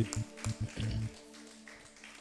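Hand claps in a quick rhythm over a held chord of background music; the claps stop about a second in and the music fades away.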